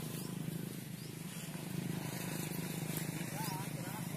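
A steady low hum, like a distant engine running, with a few faint high chirps over it.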